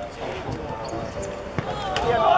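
Players' voices calling out across an outdoor hard court, with thuds of a football being struck and bouncing; the sharpest thud comes about a second and a half in.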